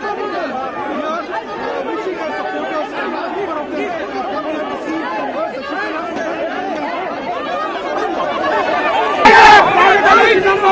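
A dense crowd of people talking and shouting over one another, with a sudden, much louder burst of close shouting near the end.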